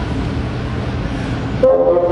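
Steady room noise with no playing, then two bassoons come in together about one and a half seconds in, with a loud held note that opens the next movement.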